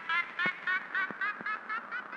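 Electronic music from an Elektron Digitakt and Roland SP-404A sampler setup winding down: a pitched, wavering sample repeating about four times a second and growing fainter, with a few sharp clicks under it.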